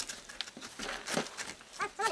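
Short wordless vocal sounds from a young man, a falling cry just past a second in and a wavering cry near the end, with a few light knocks.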